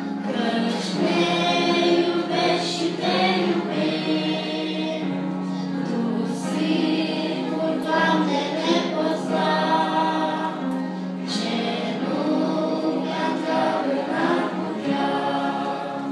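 A choir sings a hymn in Romanian over a low note held steadily underneath.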